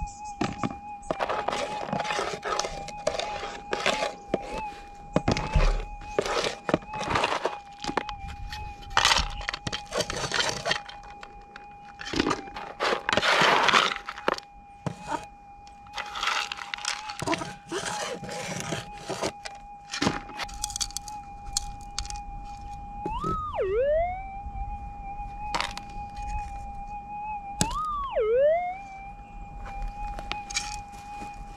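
Minelab GPX 6000 gold detector's steady threshold tone, with crushed quartz ore rattling and scraping as it is sorted by hand and scooped in a plastic gold pan. Twice near the end the tone swoops up and then dips sharply before settling: a target signal from a piece passed over the coil.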